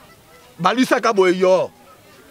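A man's voice in one drawn-out exclamation lasting about a second. It holds one pitch and drops away at the end.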